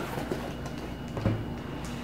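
Cardboard box handled and set down on a wooden table, with a dull thump just past a second in and a few faint clicks, over a steady low hum.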